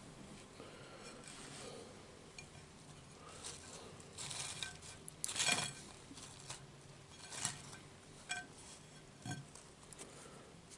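Tableware and food being handled at a table: scattered soft clinks, taps and rustles, the loudest about five and a half seconds in.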